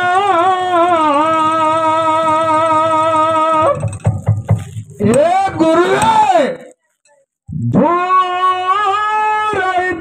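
A male folk singer's voice holds a long, drawn-out sung note, then sings a phrase that rises and falls. A brief silence follows, and then another long held note.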